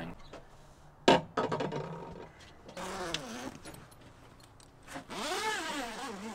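Handling noise as a roll-out awning's fabric cover is opened: a sharp click about a second in, then scraping and rustling, with a longer rasping pull near the end.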